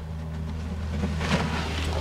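A steady low hum, with a short rustle of handling noise partway through.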